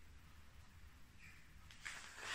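Near silence: room tone with a faint low hum, and a faint short noise shortly before the end.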